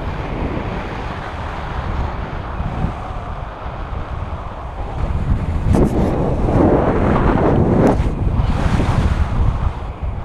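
Wind rushing over and buffeting an action camera's microphone during a tandem paraglider flight: a steady low rumble that swells into louder gusts about halfway through and again near the end.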